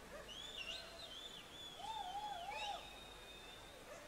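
Several overlapping whistles, gliding up and down and wavering. The loudest, a lower warbling whistle, comes about halfway through.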